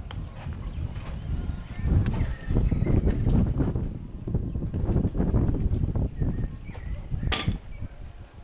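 Outdoor ambience on a handheld camera: an uneven low rumble of wind and handling on the microphone, with a few faint bird chirps and one sharp click a little past seven seconds in.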